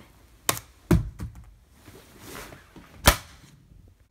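A few sharp knocks and thuds, the loudest about three seconds in.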